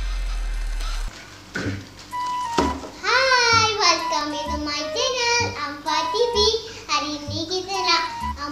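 A deep electronic intro music tone that cuts off about a second in, then a young boy talking with light background music under his voice.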